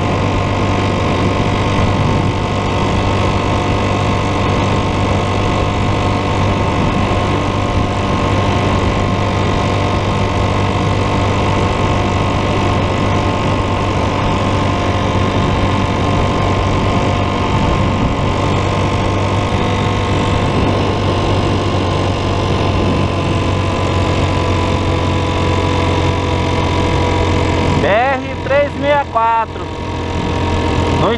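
Motorcycle engine running steadily at a constant cruising speed, with wind and road noise. A man's voice starts near the end.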